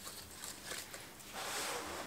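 Faint rustling and light handling of an aspidistra leaf strip being twisted into a curl, with a soft, louder rustle in the last half-second.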